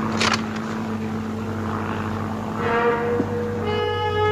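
A steady engine drone, with orchestral music coming in near the end.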